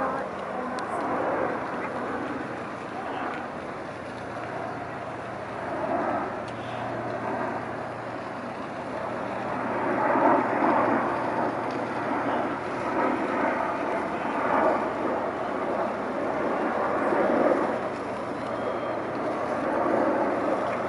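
Diesel engines of the crab boat Fierce Allegiance running with a low, steady hum, mixed with people talking nearby.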